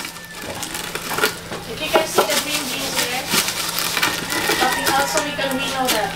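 Wooden pestle pounding and grinding dried Liberica coffee cherries in a mortar, a few irregular knocks, to crack the hulls off the green beans inside. People talk over the knocking.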